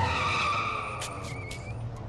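Police cars skidding to a stop, their tyres squealing in a fading screech, with a few sharp clicks about a second in.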